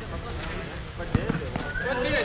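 A basketball bouncing on an outdoor concrete court: a few sharp bounces, the loudest just past the middle, with players' voices talking around it.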